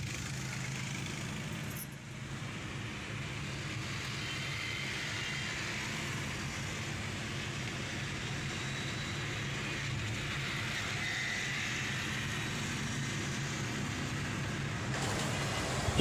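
Steady in-cabin noise of a car driving at speed: a low engine hum under the rush of tyres on the road.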